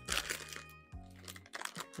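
A clear plastic zippered storage bag crinkling as it is handled, in a couple of short rustles, over soft background music with low held notes.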